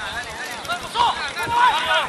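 Men shouting on a football pitch: loud calls between players and coaches, strongest from about a second in.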